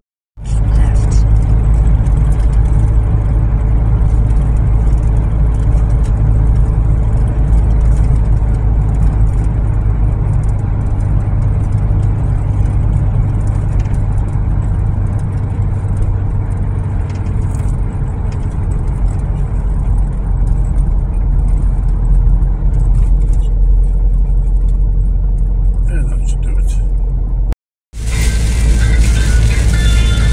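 Steady deep rumble of a camper van driving through a road tunnel, heard from inside the cab, with music playing over it. Near the end the sound drops out for a moment and comes back with more hiss in it.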